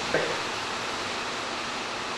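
A steady, even hiss of background noise, with no tool or engine sound.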